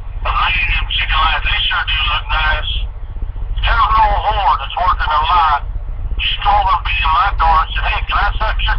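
A man's voice speaking in phrases, with short pauses, over a steady low hum.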